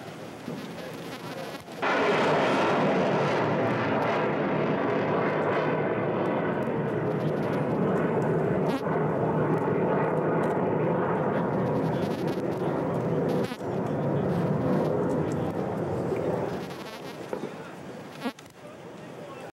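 Ship-launched Tomahawk cruise missile firing: the rocket booster's rushing noise sets in suddenly about two seconds in, stays loud and steady, then dies away near the end.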